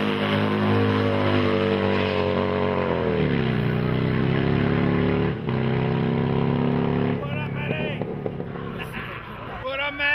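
Motorcycle engine held at high revs for a burnout, its pitch falling about three seconds in and holding steady lower, then stopping suddenly a little after seven seconds. Voices follow near the end.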